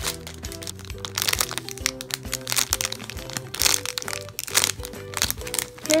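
Clear plastic bag around a squishy toy crinkling in irregular crackles as it is handled, over background music with steady held notes.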